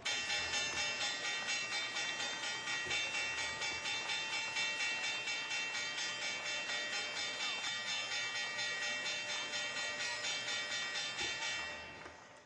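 An electric opening bell ringing rapidly and without a break, about four strikes a second, marking the market open. It fades and stops near the end.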